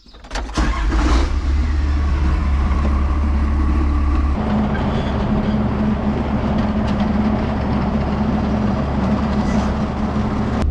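Tractor diesel engine cranking and catching about half a second in, then running steadily. About four seconds in its note changes as it settles, and it runs on evenly from there.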